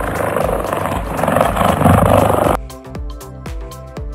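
A big cat's roar: a rough, loud call that stops abruptly about two and a half seconds in, over background music with a steady beat.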